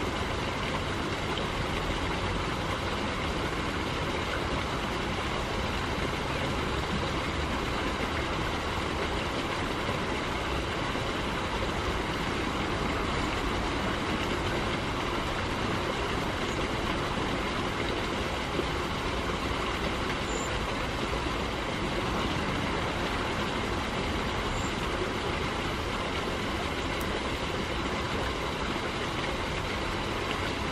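Steady rushing of a shallow stream flowing over stones, with a low rumble underneath.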